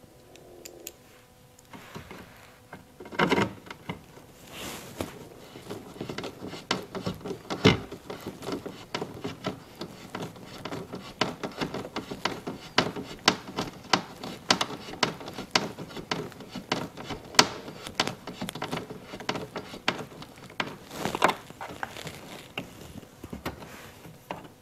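A screw being driven by hand with a screwdriver into the carbon-fibre side skirt's fixing hole: a long run of irregular small clicks and ticks, a few per second, with a louder knock about three seconds in.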